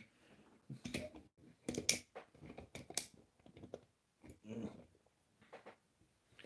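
A series of light clicks and knocks as toy train coaches are set down on wooden toy railway track and coupled to the engine by magnet, with a brief muffled sound about four and a half seconds in.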